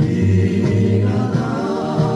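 Indorock band music: a male voice singing over the band, with a steady bass line and a wavering held sung note coming in about halfway through.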